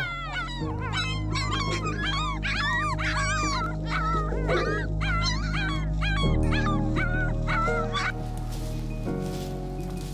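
Young puppies whining and yelping, a dense run of short high-pitched rising-and-falling cries that stops about eight seconds in, with background music underneath.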